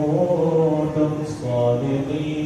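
A man reciting Quranic verses in a melodic chant through a handheld microphone, holding long notes and sliding between pitches.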